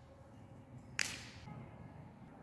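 A single sharp snip of scissors closing through folded paper about a second in, cutting off the excess paper.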